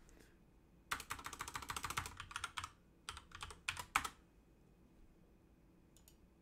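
Typing on a computer keyboard. A quick run of keystrokes starts about a second in, followed by a few separate keystrokes that stop about four seconds in.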